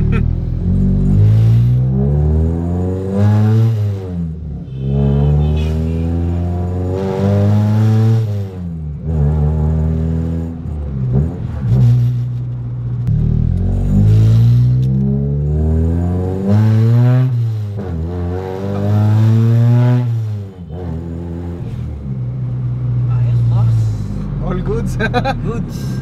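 Car engine heard from inside the cabin while driving, its note rising as it revs up and dropping back, about eight times over.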